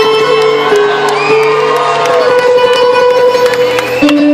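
A live band with an orchestral string section playing sustained, held notes in a concert hall, with cheering and whoops from the audience over it.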